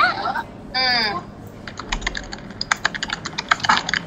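Typing on a computer keyboard: a rapid, irregular run of key clicks that starts about a second and a half in, after a short spoken reply.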